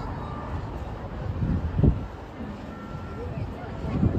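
Steady city road-traffic noise with a louder swell about two seconds in, and a faint brief tone later on.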